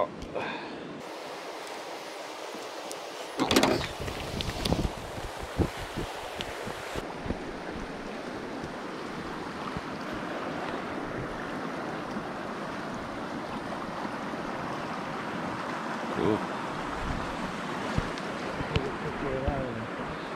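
Fast river water running high over rocks, a steady rushing wash. A few sharp knocks and clicks come in the first few seconds.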